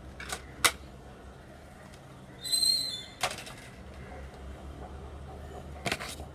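Plastic blister packaging being handled and opened to free a pair of long metal tweezers: sharp clicks and crackles of stiff plastic, with a louder half-second squeaky scrape about halfway through.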